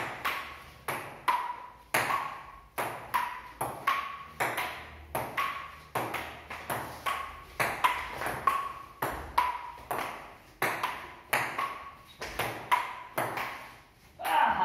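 Table tennis ball clicking back and forth between paddles and table in one long, fast rally, about two hits a second, each hit ringing briefly in a bare room.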